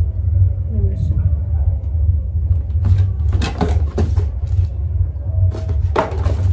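Cardboard box flaps and paper packaging rustling and crinkling as they are handled, in a quick cluster of strokes past the middle, over a steady low rumble.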